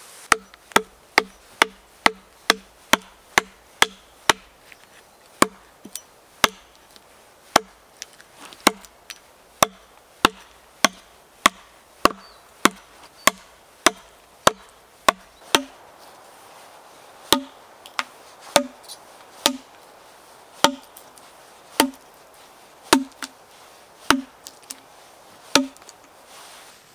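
Hatchet chopping bark and chips off a felled log: a long series of sharp knocks, quick at first at about two or three a second, then slowing to about one a second after the first few seconds.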